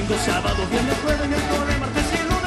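A live Andean fusion band playing a carnavalito, with a steady drum beat, bass, guitars and strummed charango.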